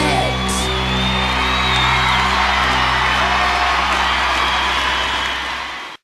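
A live pop-rock band holds the song's final chord and lets it ring, with an audience cheering and screaming over it. The sound fades over the last second and cuts off.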